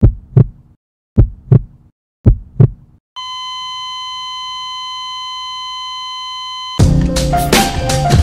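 Heartbeat sound effect: three double thumps, lub-dub, about a second apart, followed by a steady electronic beep tone held for about three and a half seconds, like a monitor flatline. Near the end it is cut off as drum-driven music starts.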